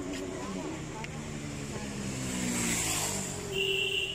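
A motor vehicle's engine running, its pitch falling slowly as it goes, with a short high tone near the end.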